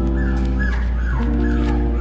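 Background music with held notes, and a few short high calls from a very young Havapoo puppy near the middle.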